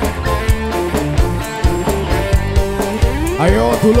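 Live dangdut koplo band playing an instrumental passage: electric guitars and keyboard over a drum kit keeping a steady beat. Near the end a voice calls out over the music.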